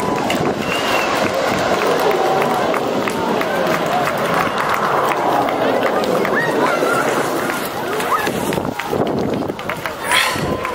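A crowd of spectators talking and calling out over a steady rushing roar from the jet engines of a twin-jet airliner that has just landed and is slowing down the runway.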